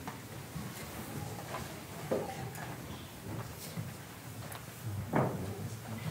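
Quiet room sound with a low rumble and two short knocks, one about two seconds in and a louder one near the end.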